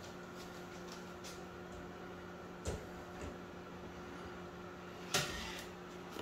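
A steady low hum, with a few faint clicks, a soft knock a little under three seconds in and a louder knock about five seconds in.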